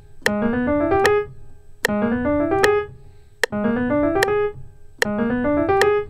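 Piano playing a short, fast rising run four times over: a two-note left-hand pickup (A♭, B♭) handed off to four right-hand notes (B, D, E, G), a B♭7 altered-dominant run practised slowly within one octave. Under it a metronome clicks a little under once a second, and each run starts on every second click.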